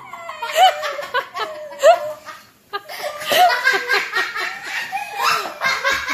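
A person laughing hard in rapid repeated bursts, breaking off briefly about halfway through and then starting up again.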